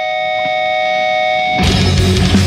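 Opening of a progressive death metal track: held, high-pitched guitar tones swell in, then about one and a half seconds in the full band comes in loud, with drums and distorted guitars.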